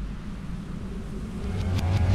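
A low rumble swelling steadily louder, with the song's intro coming in about one and a half seconds in: pitched notes and sharp percussive hits.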